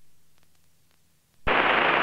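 Aircraft radio audio through the headset feed: a click as a transmission ends, then about a second of near silence, then another station's radio call breaks in abruptly about one and a half seconds in.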